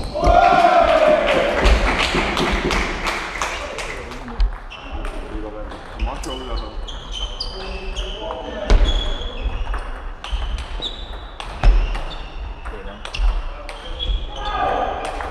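A loud voice calls out at the start, then a table tennis rally: a plastic ball ticking quickly and irregularly off bats and table, each hit a short sharp click with a brief high ring, echoing in a large hall.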